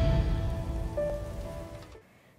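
Tail of a logo sting: a fading hiss with a few soft held musical tones, dying away near the end.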